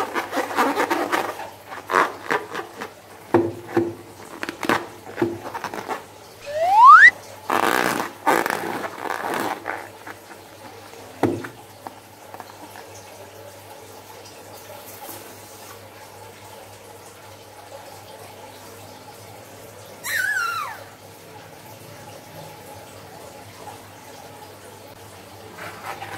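A slime-filled rubber balloon handled and squeezed, giving rubbery squeaks, squelches and clicks. There is a short rising squeak about seven seconds in and the loudest squelch just after, then a long quiet stretch broken by one short falling squeal.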